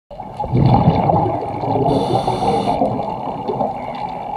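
Underwater scuba breathing heard through the camera housing: exhaled bubbles rumbling and gurgling from a diver's regulator, with a brief regulator hiss about two seconds in.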